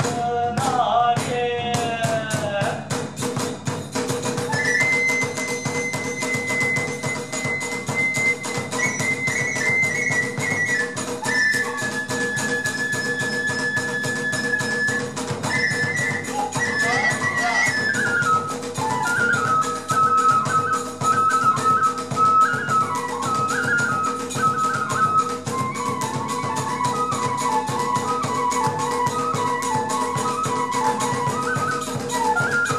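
Iwami kagura festival ensemble playing: a bamboo transverse flute holds long high notes, then steps down to a lower, busier melody in the second half, over fast, steady drum and hand-cymbal beating.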